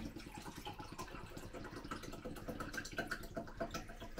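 Liquid poured from a plastic bottle into a stemmed glass: a faint, continuous trickle as the glass fills.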